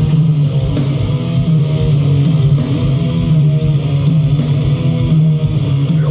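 Heavy metal band playing live, loud through a concert PA: distorted electric guitars riffing over bass guitar in a steady, continuous wall of sound.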